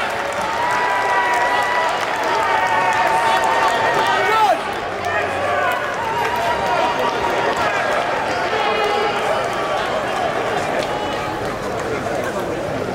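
Arena crowd noise after a boxing decision: many voices shouting and cheering at once, with scattered clapping and a long wavering high call in the first few seconds.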